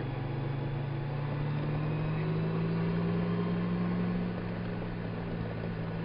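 Touring motorcycle engine running steadily at cruising speed, heard from on board the bike. Its note rises a little about two seconds in and eases off again near the end.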